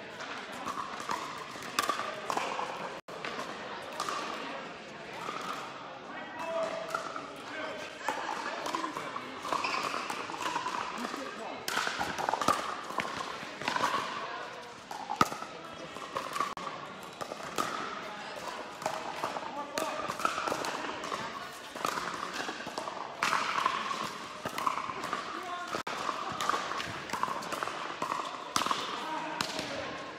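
Pickleball paddles striking a plastic pickleball and the ball bouncing on the court, a string of sharp pops in a large indoor hall, over indistinct voices.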